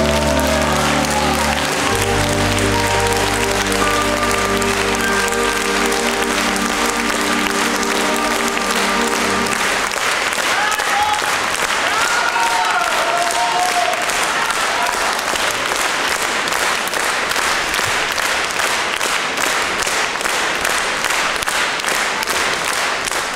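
A brass band holds its final chord for about ten seconds as the audience breaks into applause; the chord stops and the applause carries on.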